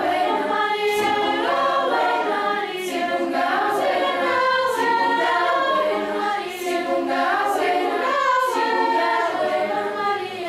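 Children's choir of girls' voices singing together, several voice lines overlapping in a sustained, flowing melody.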